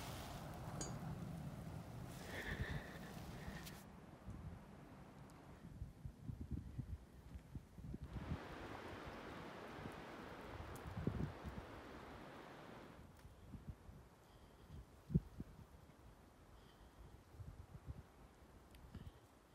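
Faint wind in snow-covered pine trees, with a gust that swells and fades in the middle. Scattered soft thumps run throughout.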